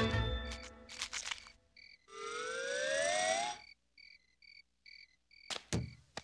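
Cartoon sound effects: a few clicks, then a rising whistle-like glide over a hiss about two seconds in. After it come cricket chirps, about two to three a second, with two sharp clicks near the end.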